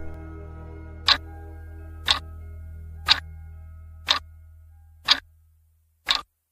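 Clock-tick sound effect of a quiz countdown timer, five sharp ticks a second apart, over a soft steady background music bed that fades out near the end.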